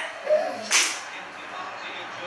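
A man's short celebratory shout, cut off by a sharp hiss under a second in, then quieter room noise.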